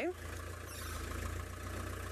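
Open safari vehicle's engine running as it pulls away along a dirt track: a steady low rumble with a hiss of road and wind noise over it.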